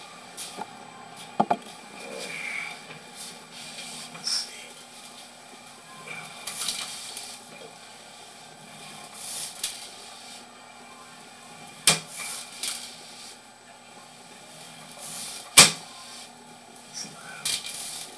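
Sewer inspection camera's push cable being drawn back by hand: scattered sharp clicks, two loud ones in the second half, and short swishing rustles over a low steady hum.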